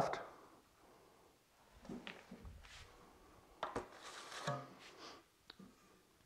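Faint, intermittent scraping of a steel drywall trowel spreading joint compound over a butt joint, with a couple of light taps.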